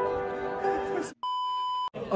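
Background music with long held notes, cutting off about a second in; after a brief silence, a single steady electronic bleep sounds for under a second.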